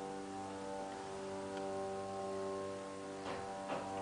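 Hydraulic lift's pump motor running steadily as the car rises, a constant hum of several held tones, with two faint clicks near the end.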